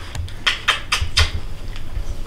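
A dog licking a person's face: a quick run of about five wet smacks in the first second or so.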